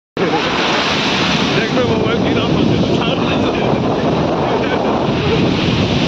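Sea surf breaking and washing up the beach, with wind buffeting the phone's microphone in a steady loud rush.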